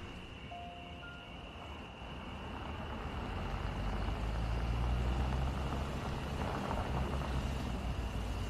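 A Toyota SUV driving slowly toward the listener, its engine and tyres rising to a low rumble that is loudest about five seconds in. Crickets chirr steadily underneath.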